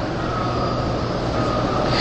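Steady background noise with a low hum underneath and no speech.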